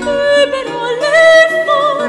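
A woman singing a Renaissance melody with a plucked lute accompanying her; she holds a higher, wavering note from about a second in.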